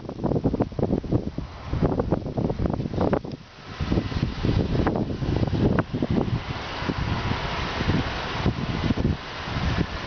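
Wind buffeting the camera microphone, an uneven low rumble that gusts and dips, turning into a steadier hiss about six seconds in.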